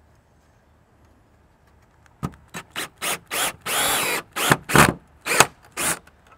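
Cordless drill fastening a bracket to a wooden fence post, starting about two seconds in. It runs in a series of short trigger bursts with one longer run in the middle, where the motor pitch rises and falls.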